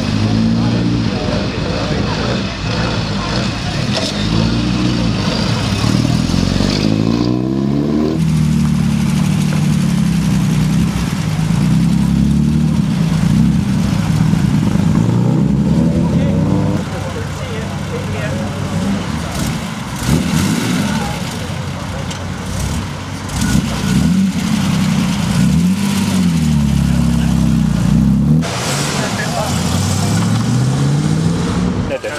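Classic British sports car engines revving and pulling away in turn, rising and falling in pitch as they accelerate.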